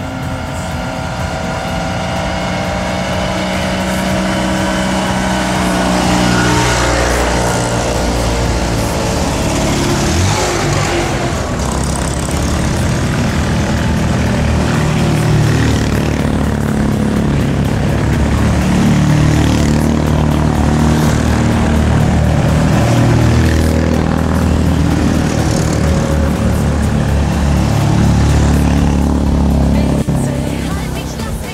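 Several classic Fiat 500s with air-cooled two-cylinder engines driving past one after another on a climbing road, their engine notes rising and falling as each goes by. Music fades out over the first few seconds.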